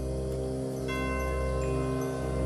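Background score music: sustained tones over a low bass, with bright chime-like mallet notes coming in about a second in.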